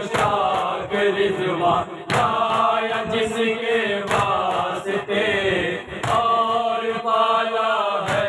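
A group of men chanting an Urdu noha (mourning lament) together in phrases about two seconds long, with the slaps of hands beating on chests (matam) sounding through the chant.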